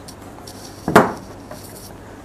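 Metal-cased AEX DM 201 digital media player being turned around and set down on a tabletop: one sharp knock about a second in, with a few faint handling clicks around it.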